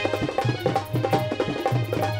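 Instrumental interlude of a devotional bhajan: Indian hand drums such as tabla play a quick, steady rhythm of about four strokes a second over a held low note.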